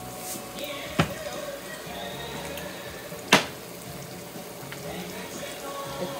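Onion and garlic sauce frying gently in a nonstick frying pan, with two sharp clicks: a lighter one about a second in and a louder one a little past three seconds.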